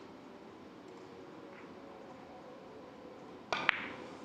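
Three-cushion carom billiards shot. Near the end, the cue tip clicks against the cue ball, and a split second later the cue ball strikes an object ball with a sharper, louder click.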